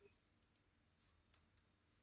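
Near silence, with a few faint clicks from a computer mouse or keyboard.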